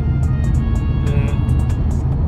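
Steady low road and engine rumble inside a moving car's cabin, with background music playing over it.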